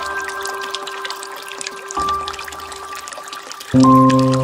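Slow, soft piano music of held notes, with a new note about halfway and a louder, fuller chord just before the end, over a faint trickle of water from a bamboo water fountain.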